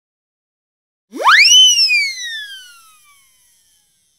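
Synthesized swoosh sound effect for a logo intro, starting about a second in. A single tone sweeps up fast from low to high, then glides slowly down and fades away.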